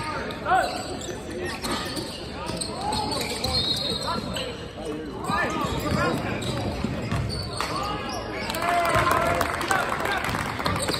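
Basketball game on a hardwood gym floor: a ball bouncing as it is dribbled, short sneaker squeaks, and voices calling out across the gym.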